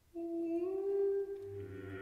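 Contemporary music for bass clarinet and seven voices: one held note, bending slightly upward, enters out of near silence. About a second and a half in, a low held note and several more voices join to form a dense, chant-like chord.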